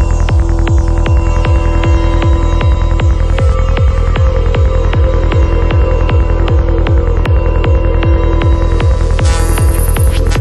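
Full-power psytrance track: a driving kick drum at about two and a half beats a second over a pulsing bassline, with a held synth tone and fast hi-hat ticks. A rising noise sweep builds near the end.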